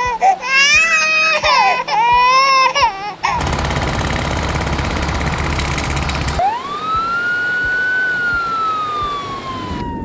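A string of loud animal-deterrent alarm sounds. First a wavering, cry-like wail for about three seconds, then about three seconds of harsh buzzing noise, then a siren-like tone that sweeps up sharply and slowly falls away.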